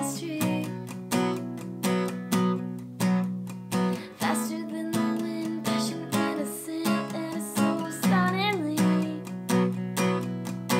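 Red Fender Sonoran acoustic guitar with a capo, down-strummed in a long-short-short pattern at a steady pace while the chords change from A minor to Fsus2 to Gsus4. A woman's voice sings a short phrase near the end.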